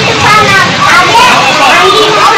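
Several voices, children's among them, shouting and chattering loudly over one another, with no clear words.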